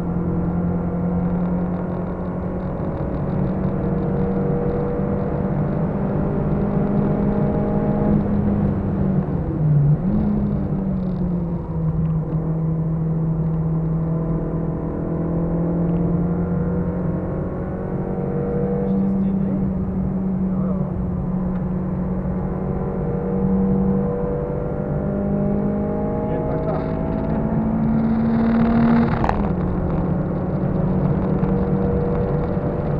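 Car engine heard from inside the cabin while driving hard on a race track, its note holding steady and slowly climbing as it pulls through the gears, with sharp pitch changes at gear shifts about ten seconds in and again near the end, over steady tyre and road noise.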